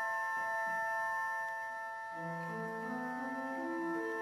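Organ playing slow, sustained chords, with a lower line of held notes entering about halfway through and moving step by step.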